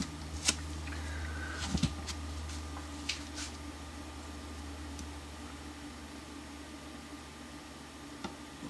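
Electric fan running with a steady low hum, with a few faint clicks in the first half.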